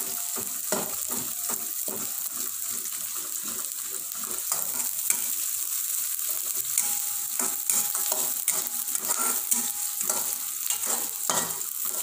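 Chopped shallots, garlic and green chilies sizzling in hot oil in a wok, with a metal spatula scraping and tapping against the pan again and again as they are stir-fried. The aromatics are being sautéed until fragrant.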